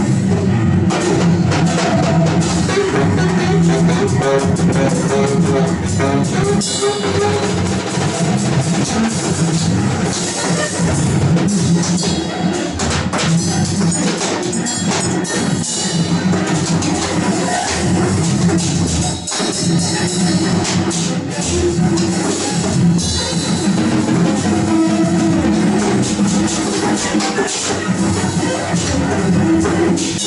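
Live free-improvised music: two drum kits played with sticks in dense, busy strokes and cymbal hits, over a cello bowing low held notes.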